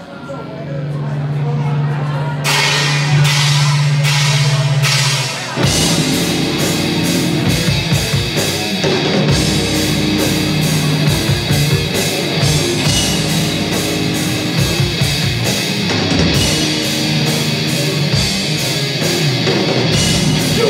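Live heavy metal band starting a song: a single low note is held, a steady beat of sharp strikes joins about two seconds in, and the full band comes in with distorted electric guitars and drums about five seconds in.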